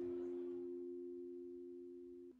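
A strummed acoustic guitar chord ringing out, its notes held and slowly fading.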